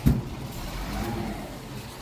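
A vehicle engine rumbles steadily and low in the background, with a brief thump right at the start.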